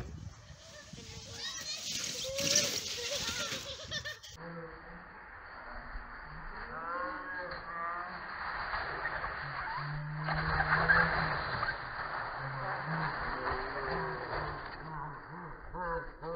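Plastic sled sliding over packed snow with a rough scraping hiss, twice, with children's voices shouting and yelling over it.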